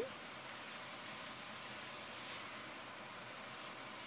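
Faint, steady sizzle of diced beef and ground spices frying in a cast iron pot.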